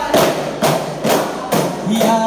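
Aravana, hand-held one-sided frame drums of wood and skin, struck together by the group in unison: four loud beats about half a second apart, with male singing starting again near the end.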